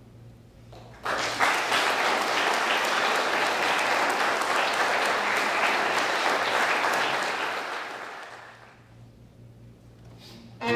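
Audience applauding, starting suddenly about a second in, holding steady, then dying away near the end.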